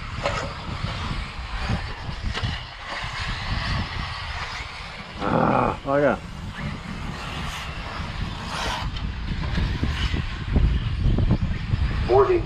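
Wind on the microphone at an open outdoor track, with a short burst of a voice about five seconds in.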